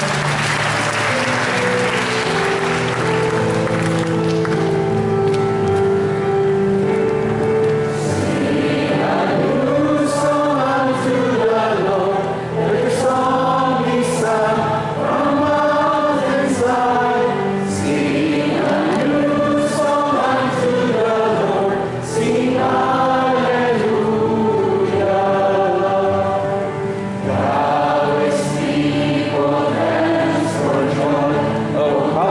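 Church choir singing a hymn in parts, with long sustained notes, at the close of Mass.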